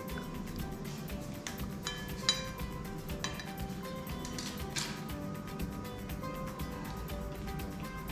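Soft background music, with a few light clinks of a metal knife against a ceramic plate and bowl, the sharpest a little over two seconds in.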